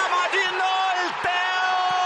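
A male TV commentator's excited speech, then one long held shout of the scorer's name starting a little over a second in, over a stadium crowd cheering a goal.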